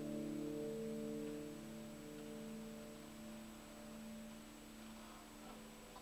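Hollow-body electric guitar chord ringing out and slowly fading away.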